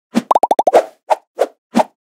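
Animated-intro sound effects: a single pop, then a quick run of five pitched plops, each bending down in pitch, followed by four more pops about a third of a second apart.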